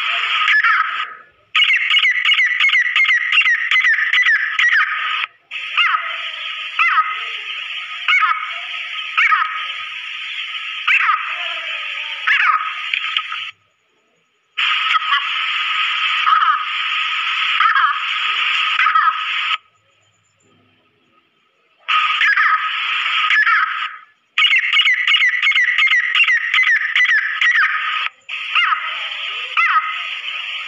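Female grey francolin calls: rapidly repeated high notes in a loud, hissy recording. The calling stops abruptly several times, with the longest break about two seconds long roughly two thirds of the way in.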